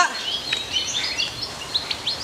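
Birds chirping: a scatter of short, high calls over steady outdoor background noise.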